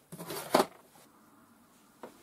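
A brief rustle and clack of a pair of scissors and wire being picked up and handled, loudest about half a second in, followed by quiet.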